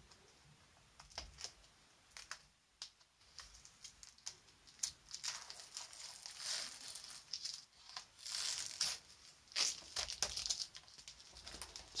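Tape being peeled off the edge of textured watercolour paper in a run of short ripping pulls, faint at first and louder in the second half.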